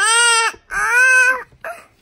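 Toddler squealing with delight: two long, high-pitched squeals followed by a short third one.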